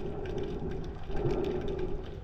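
Underwater ambience: a steady low hum that fades and returns, over a dull rumble, with faint scattered clicks.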